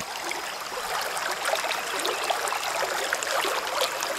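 Stream water running steadily, a trickling, bubbling rush with many small fine ticks.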